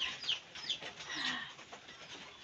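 Muscovy ducks making a few short, faint, high calls that fall in pitch.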